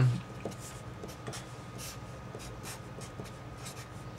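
Sharpie marker writing on paper: a quick series of short strokes.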